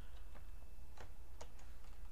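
A few separate computer-keyboard key presses, single clicks spaced irregularly about a second apart, over a steady low hum.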